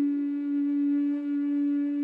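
Native American flute holding one long, steady low note.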